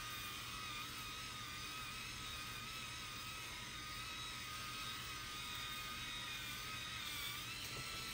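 MicroTouch Titanium electric head shaver with a five-blade rotary head, running on a bald scalp. Its motor gives a steady, faint whine whose pitch wavers slightly.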